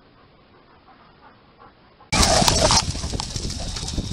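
A German Shepherd panting softly in a quick, even rhythm. About two seconds in, this cuts to a sudden loud rushing noise that stays steady.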